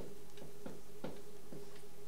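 Light, evenly spaced ticks, about three a second, over a steady low hum.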